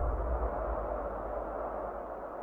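Fading tail of a logo-intro sound effect: a low rumbling whoosh dying away steadily.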